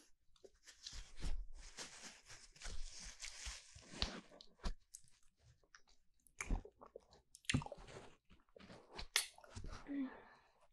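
Close-miked wet mouth sounds of a hard lollipop being sucked and licked into a binaural microphone: irregular smacks and clicks of lips and tongue on the candy.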